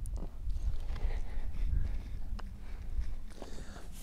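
Low, steady rumble of wind on the microphone, with a few faint clicks.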